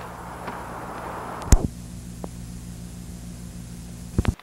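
Old VHS tape playing back: a steady low electrical hum under tape hiss, with one sharp click about a second and a half in, after which the hiss drops away and only the hum remains.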